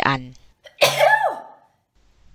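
A single sneeze about a second in: a sudden sharp burst followed by a short falling voiced tail.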